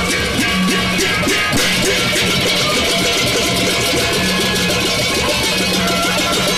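Gendang belek ensemble playing: a dense, unbroken clatter of cemprang hand cymbals clashing rapidly, over drums and a recurring low held tone.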